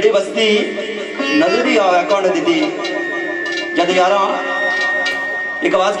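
A man singing Pothwari sher verse into a microphone, his voice wavering on long held notes, over amplified sitar accompaniment.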